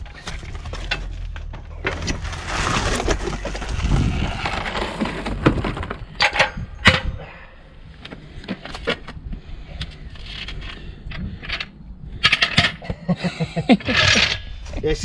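A heavy steel floor jack is hauled out of its cardboard box, with the cardboard scraping and rustling. It is then set down on concrete with two loud sharp knocks about six seconds in. Lighter metallic clicks and rattles follow, with a quick run of them near the end.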